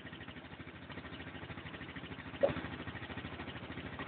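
ATV engine running at low revs, faint and steady, as the quad works up a steep rocky trail.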